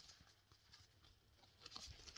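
Near silence with faint, soft ticks and rustles of trading cards being handled, a small cluster of them near the end.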